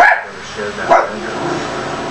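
A dog barking twice, short sharp barks at the start and about a second in, over low speech.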